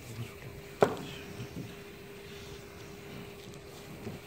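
One sharp knock about a second in as a small object is set down on the newspaper-covered work table, over a faint steady hum.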